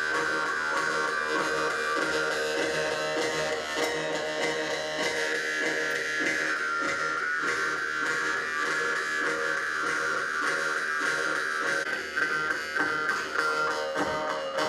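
Several Yakut khomus (jaw harps) played together: a continuous buzzing drone with a shifting overtone melody over it, turning choppier and more rhythmic near the end.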